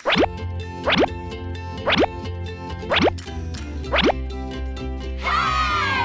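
Cartoon pop sound effects: five quick downward-sweeping pops, about one a second, marking the foam puzzle mats being pressed together, over cheerful children's background music. Near the end a shimmering, falling swoosh effect plays.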